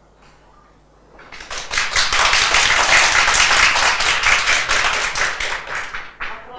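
Audience applauding: clapping begins about a second in, swells quickly to a steady loud patter of many hands, and tails off near the end.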